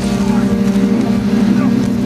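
Wood chipper's engine running at a steady drone.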